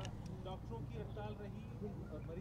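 Faint voices of people talking in the background over a steady low rumble, with no main voice at the microphones.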